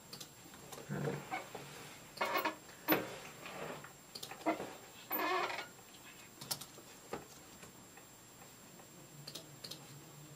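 Sparse, irregular clicks from a computer mouse and keyboard, with a few short, faint muffled sounds in between.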